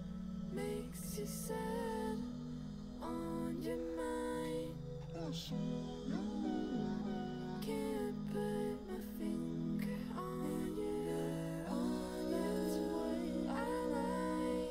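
Playback of a song's multitrack session: layered, sustained sung "oohs and aahs" backing vocals over held chords, some notes sliding in pitch.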